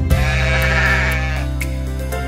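Cartoon sheep bleating a long 'baa' that fades out about a second and a half in, over a soft music accompaniment of held chords.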